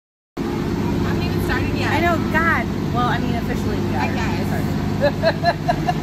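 A large vehicle's engine, most likely a bus, running with a steady low rumble that starts abruptly a moment in. Women's voices talk over it, with a quick run of laughter near the end.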